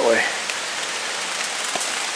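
Small woodland stream flowing: a steady, even rush of water, with a couple of faint ticks.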